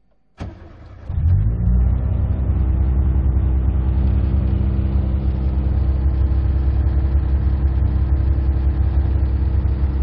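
Citroën 1.6 16V engine, run on a MegaSquirt plug-and-play ECU, started by push button: a click, a brief crank, then it catches about a second in and settles into a steady idle.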